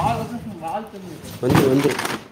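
A person's voice talking in short phrases, loudest about one and a half seconds in.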